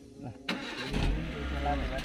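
A sharp click about half a second in, then a van's engine starts and settles into a low, steady idle.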